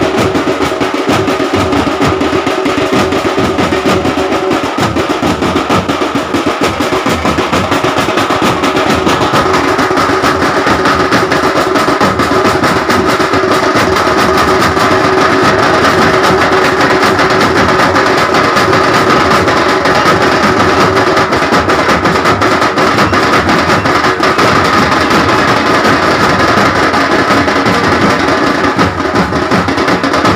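Loud, fast drumming with steady held notes running over it: music playing for dancers.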